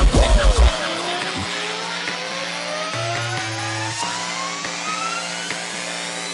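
Electronic dance music: a pulsing heavy bass beat cuts out about a second in, leaving held synth chords under a single tone that rises slowly and steadily in pitch, a build-up.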